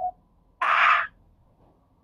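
A single short, harsh, breathy vocal sound from a man, about half a second long, a little over half a second in, between near-silent pauses in his talk.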